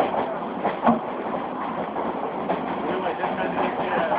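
Passenger train running, its steady rolling noise coming in through an open carriage door, with voices over it and a brief louder burst about a second in.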